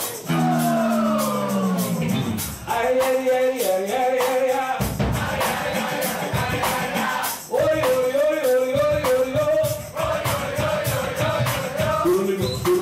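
Live band music: a male singer slides down in long falling notes, then holds wavering notes over guitar, bass and drums. A steady drum and hand-percussion beat comes in about five seconds in.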